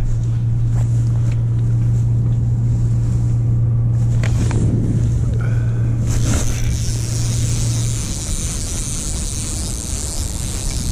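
A steady low hum that cuts off abruptly near the end. In the second half, a spinning reel is wound to bring in line on a bite, with a high hiss alongside.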